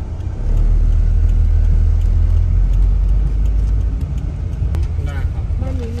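Low, steady rumble of a moving car heard from inside the cabin: road and engine noise. It swells about half a second in and eases off after about four seconds.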